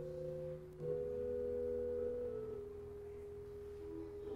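Church organ playing slow, held chords on soft, pure-toned stops. The chord changes a little under a second in and again a couple of seconds later.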